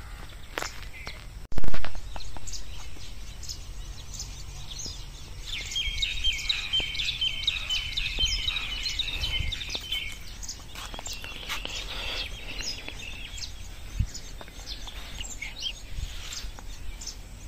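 Small birds calling outdoors, with a rapid run of repeated high chirps lasting a few seconds in the middle and scattered calls after it, over a steady low rumble. A single sudden loud thump comes about a second and a half in.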